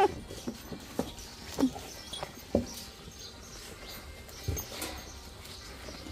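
Excited dogs crowding close, giving short whines and yelps that fall in pitch, several in the first few seconds and then fainter.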